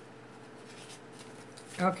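Faint rustling of paper as the pages of a small paperback guidebook are leafed through, over a low steady hum. A woman starts speaking near the end.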